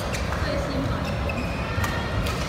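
Badminton racket strikes on a shuttlecock during a rally: a sharp crack just at the start and a louder one near the end, about two seconds apart.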